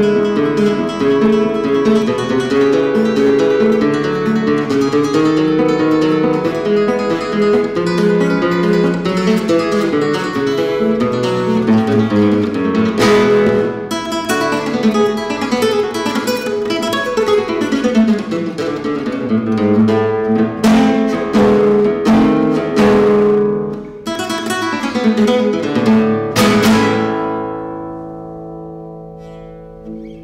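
Solo classical guitar playing a flamenco-style piece: quick melodic runs, then strummed chords from about halfway through. It closes on a final chord that rings out and fades over the last few seconds.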